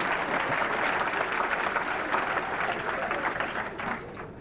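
Audience applause after a joke, a steady spread of clapping that dies away near the end.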